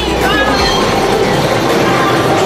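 Loud party noise: music with a bass line moving in held notes, under the din of a crowded room.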